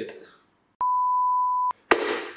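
A single steady electronic beep, a pure tone just under a second long that starts and stops abruptly, followed by a sharp click near the end.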